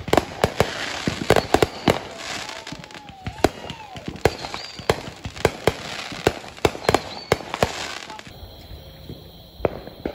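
Aerial consumer fireworks going off: a fast string of sharp bangs over a crackling hiss, which stops about eight seconds in.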